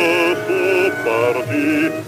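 Bass-baritone voice singing on a 78 rpm record, a few held notes with a strong vibrato, with a short break for breath at the very end.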